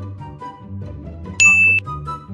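A single bright, bell-like 'ding' sound effect about a second and a half in, lasting under half a second, over quiet background music.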